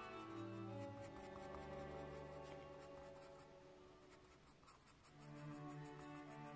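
Staedtler Mars Lumograph black 4B graphite pencil scratching on sketch paper in quick, repeated short strokes as it shades dark tone, about three to four strokes a second. Soft background music with long held notes plays under it, thinning out about four to five seconds in and swelling back near the end.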